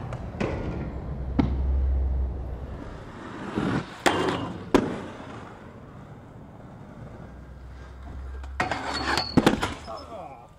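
Inline skate wheels rolling over rough asphalt, with several sharp clacks of the skates landing and striking the ground. A quick flurry of impacts near the end fits the skater going down.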